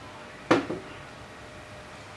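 A single sharp knock about half a second in, dying away quickly, over a quiet room background with a faint steady hum.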